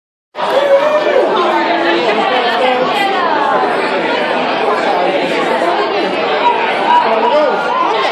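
Crowd of guests talking at once in a large hall: dense, overlapping chatter at a steady level.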